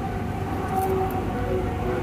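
Steady rumble of a passing vehicle, with a faint droning tone held throughout.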